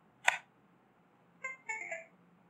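A sharp click, then the Windows two-note device-connect chime about one and a half seconds in. The chime signals that the PC has detected the NodeMCU board's CP210x USB-to-UART bridge being plugged in.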